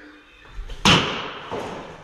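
A pitched baseball lands with a single loud smack just under a second in, echoing around a large, bare room with hard floors, and a smaller knock follows.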